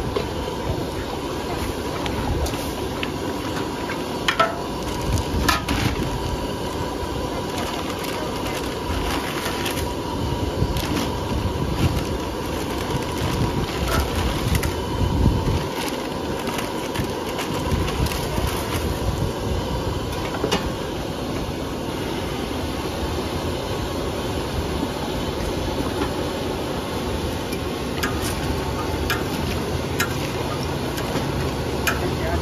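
Gas wok burner running steadily under a steel wok, with a few scattered sharp clinks of a metal ladle against the wok as noodles are stirred.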